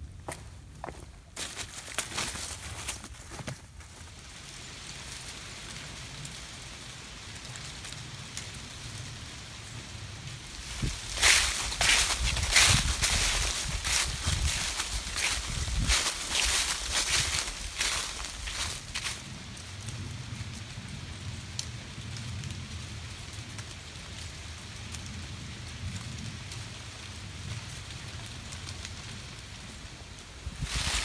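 A hiker's footsteps on a rocky, leaf-strewn trail, with sharp taps of trekking poles early on and a louder stretch of crunching through dry fallen leaves midway.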